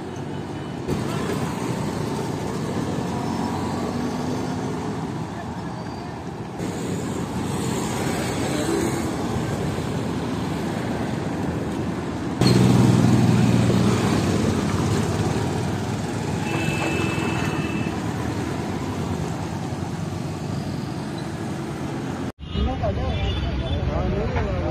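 Road traffic noise from motor scooters, motorcycles and autorickshaws passing on a city street, heard in several short edited stretches. From about halfway through, a louder stretch where a scooter and an autorickshaw pass close by. Near the end it cuts to people talking.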